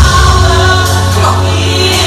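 Gospel worship song playing loudly: held choir voices over a strong, steady bass line.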